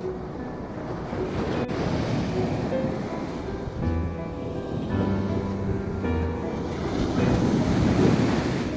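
Ocean surf washing up onto the beach, swelling louder near the end as a wave breaks, with wind buffeting the microphone. Background music with held chords plays over it.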